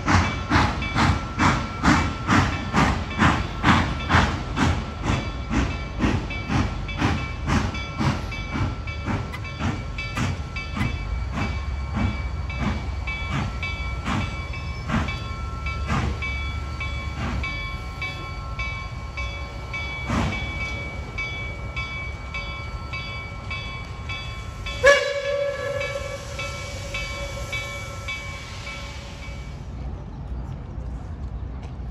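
Reading & Northern 2102, a 4-8-4 steam locomotive, working with its exhaust beating about two times a second, the beats growing fainter over the first half. About 25 seconds in, a long blast of its steam whistle starts suddenly and holds for several seconds.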